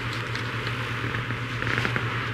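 A steady low electrical hum with faint hiss, the background noise of a studio recording, with a few faint clicks.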